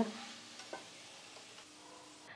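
Bitter gourd slices frying in hot oil in a wok, a faint steady sizzle, as a slotted spoon stirs them and lifts them out, with one light click about three-quarters of a second in.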